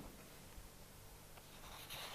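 Near silence: faint room hiss, with a couple of faint ticks in the second half.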